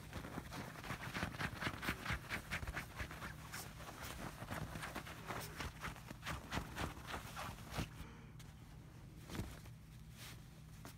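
Bedding rustling and scratching as a small dog wriggles and rolls on a bed sheet while being rubbed by hand. The busy rustling thins out about two seconds before the end.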